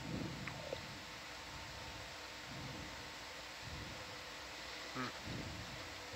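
Faint background noise: a steady hiss with a faint steady hum and a low, irregular rumble, with no distinct event.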